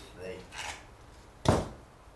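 A single short, sharp knock about one and a half seconds in, the loudest sound, amid faint handling noise as string is knotted around a potted cactus cutting.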